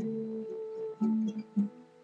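Guitar strumming chords: one chord rings for about a second, then a few short strums follow.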